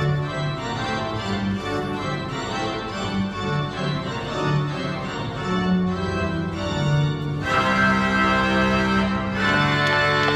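Organ music: a bass line stepping between notes under held chords, opening out into a fuller, louder chord about seven and a half seconds in.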